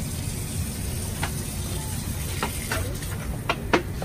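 Tap water running steadily from a sink faucet over someone's hair, with a few small clicks and taps in the second half.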